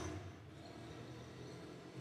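Faint room tone: a low, even background hiss with no distinct sound.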